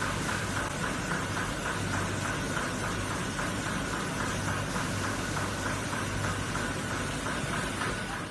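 Folder-gluer carton pasting machine running steadily, with a constant low hum and a fast, even rhythmic clatter.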